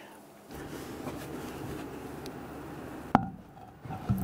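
Hydraulic gas tank jack being lowered: a steady rushing noise starts about half a second in and stops with a sharp click a little after three seconds.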